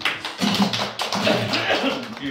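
Small audience applauding, starting suddenly as the last guitar chord dies away, with voices over the clapping.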